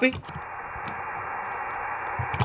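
Steady radio static hiss from a ham radio transceiver's speaker: an open channel with no reply coming through. The hiss is even and cut off above the voice range.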